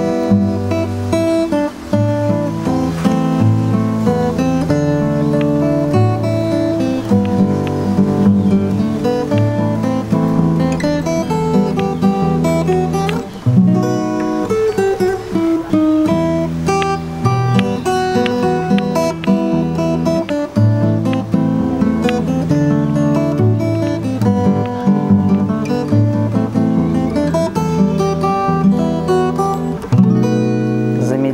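Solo acoustic guitar played fingerstyle, a melody picked over bass notes, with the tempo pushed forward in some places and held back in others.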